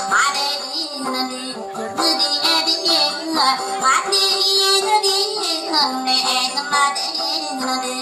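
Dayunday singing: a voice sings long, wavering phrases with pitch slides, over steady instrumental accompaniment.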